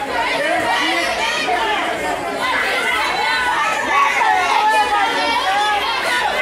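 A small crowd of wrestling fans chattering and calling out, with many voices overlapping at once.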